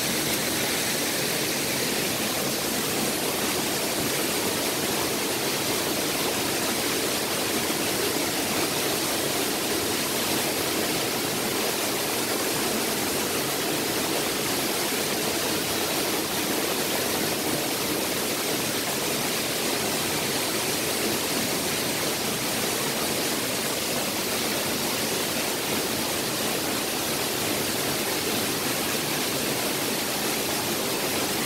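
A waterfall running full after recent rain: a steady, unbroken rush of pouring water, like thunder.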